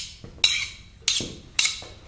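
Metal tools clinking and scraping against each other in about four sharp strokes roughly half a second apart, each ringing briefly.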